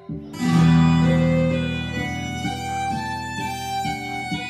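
A karaoke backing track's instrumental intro starts suddenly about a third of a second in and plays on steadily through the speakers, with held notes and no singing yet.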